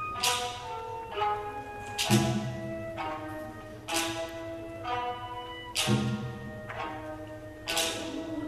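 Live Okinawan classical ensemble music: plucked string notes ringing out, with a sharp percussive strike about every two seconds, five in all.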